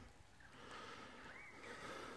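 Near silence: faint outdoor background hiss, with a faint short whistle-like tone about one and a half seconds in.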